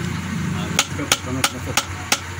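A hammer tapping on wood, four sharp knocks in quick succession, about three a second, beginning a little under a second in, as the joints of a small wooden bed frame are knocked together. A steady low hum runs underneath.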